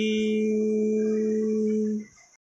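The final note of a hymn held steady as one unchanging tone, its thinner upper part fading out about half a second in; it cuts off abruptly at the end.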